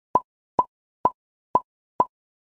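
Five short, identical pop sound effects about half a second apart, each a quick bright plop, added in editing as word labels pop onto the screen.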